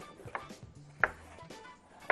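Kitchen knife cutting a red bell pepper on a wooden cutting board: two sharp knocks of the blade on the board, less than a second apart, over faint background music.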